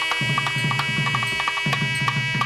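Indian devotional temple music: a hand drum playing quick, repeated strokes under a held, high melodic tone from a wind instrument.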